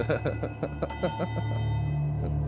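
A man laughing in a quick run of short bursts, stopping about a second and a half in, over droning, eerie soundtrack music with a low steady hum and sustained ringing tones.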